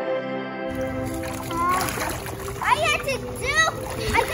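Background music that stops under a second in, followed by water splashing in a small inflatable kiddie pool as a child moves about in it. A girl's high voice bends up and down over the splashing through the second half.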